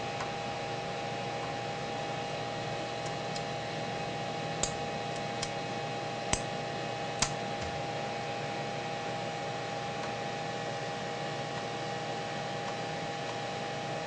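Steady hum of an open, powered Altair 8800b computer's cooling fan and power supply, with a few sharp clicks around the middle as the circuit boards in its card cage are handled.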